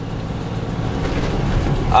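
Steady low rumble of a car driving on the road, heard from inside the cabin.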